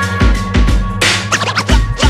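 Hip-hop track played by a live band, with a DJ scratching a record on a turntable over a steady bass line and drums. The quick pitch-swept scratches come thickest in the second half.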